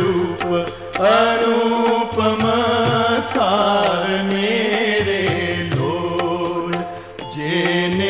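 An old Gujarati song recording playing: a melody line that slides up and down over instrumental accompaniment, with a brief drop in level about seven seconds in.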